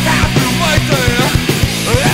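Hardcore punk played by a full band: loud electric guitars, bass and drums with a steady beat.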